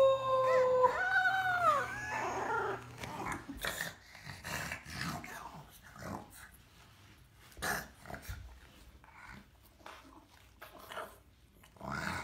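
A woman howls one long, level note, followed by a shorter howl that rises and falls. Then, from about three seconds in, a dog lying on the stairs breathes loudly, with a heavy breath every second or so, quieter than the howls.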